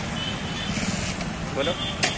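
A vehicle engine running nearby amid steady street traffic noise, with a low rumble throughout; a voice speaks briefly near the end.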